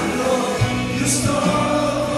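Live worship music: male voices singing into microphones over guitar and a band with drum beats, and many voices singing together.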